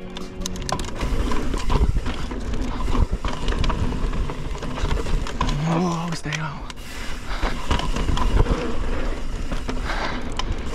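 Mountain bike descending a rough dirt trail: tyres on dirt and the bike rattling and clattering over roots and bumps, with a steady rumble on the action-camera microphone. A brief pitched sound, like a short grunt from the rider, comes about six seconds in.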